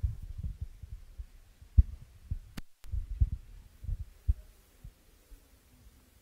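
Irregular low thuds and bumps on a conference table microphone: handling and knocking noise from the table. A sharp click comes a little over two and a half seconds in, followed by a brief total cut-out of the sound.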